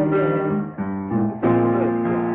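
Piano playing slow, held chords, with the chord changing about three-quarters of a second in and again about a second and a half in.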